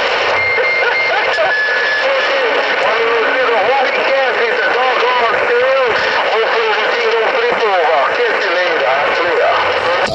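A voice received over an HR2510 transceiver's speaker, garbled and half-buried in static hiss, with two short steady whistles in the first couple of seconds.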